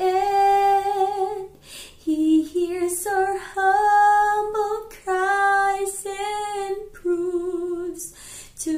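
A woman singing a slow Christian worship song solo, holding long notes with vibrato in short phrases with brief pauses between them.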